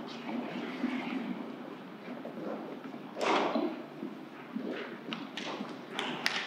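Low room noise with a few light knocks and thumps in the last second or so, and one spoken word about halfway through.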